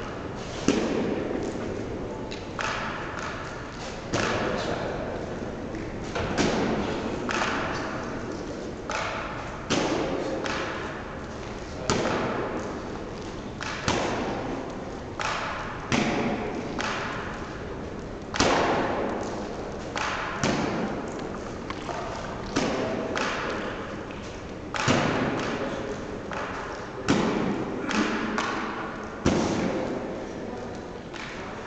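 Repeated wall-ball shots: a medicine ball thrown up against a wall target and caught, making a sharp thud about every two seconds, each one echoing briefly.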